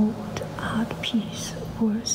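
Speech only: soft whispering and low voices, with no words made out.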